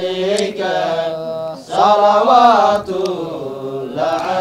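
Group of male voices chanting a devotional nasheed in praise of the Prophet Muhammad, in sung phrases with a short break about a second and a half in, followed by a louder phrase.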